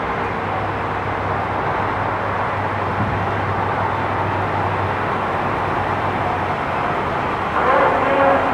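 Steady street noise with a low, even engine hum from a vehicle, which stops about six and a half seconds in.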